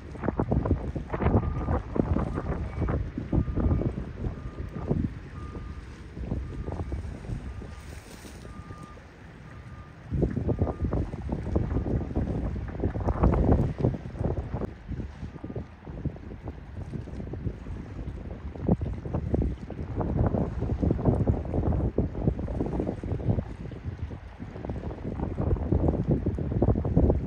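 Wind buffeting the microphone in uneven gusts, easing for a couple of seconds near the middle. A faint short beep repeats about twice a second through the first ten seconds or so.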